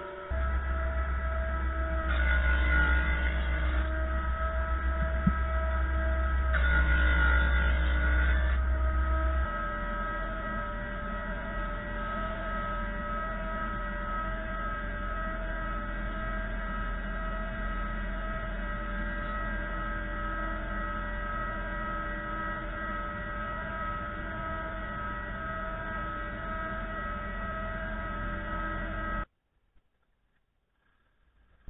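Combination planer-thicknesser running with a steady motor hum, with two louder stretches of cutting about two and seven seconds in, then settling to a steadier, lighter run; the sound cuts off abruptly shortly before the end.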